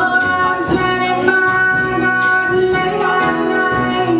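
A live folk-country band playing a slow song, with a woman singing over acoustic guitar, piano and the band.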